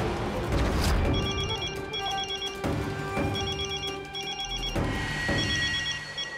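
A telephone ringing with an electronic trilling ring in pairs: ring-ring, pause, three times, over dramatic background music.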